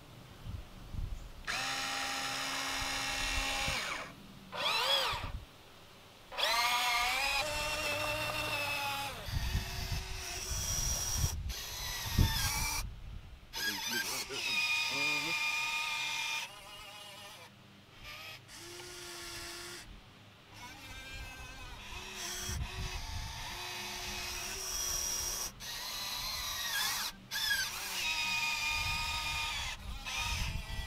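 Electric motors of radio-controlled construction models whining as they work the dump truck's bed and the excavator's arm and bucket. They run in start-stop bursts of a few seconds with short gaps, some rising in pitch as a motor speeds up.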